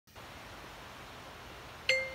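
Faint steady hiss, then near the end a single bell-like chime note rings out: the opening of a music track played on a car audio system with SEAS Prestige speakers.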